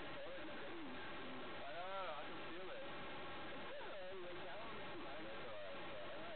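Indistinct voices talking quietly, with a louder rising-and-falling vocal sound about two seconds in, over a steady background hiss.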